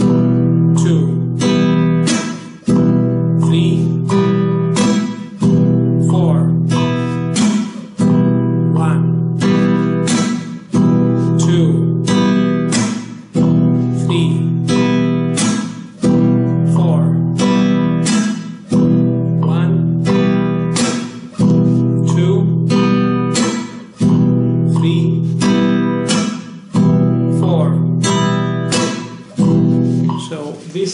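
Nylon-string flamenco guitar strummed in a steady 4/4 pattern: thumb down, thumb up, then middle and ring fingers down with the chord muted. The cycle repeats evenly, about once every two and a half seconds.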